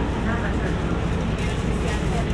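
Steady low rumble of a moving Mercedes-Benz city bus, heard from inside the cabin, with passengers talking faintly in the background.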